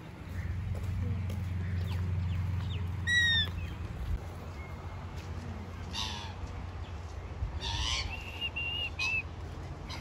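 Birds calling: a quick run of high, curved calls about three seconds in, then more calls around six seconds and again near eight seconds, one of them held as a steady whistle. A low rumble runs under the first few seconds.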